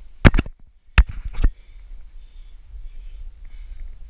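Several sharp knocks and bumps against wood as the climber's hands, body and camera strike the strangler fig's roots while climbing: two close together about a third of a second in, then two more around one and one-and-a-half seconds, over low rumbling handling noise.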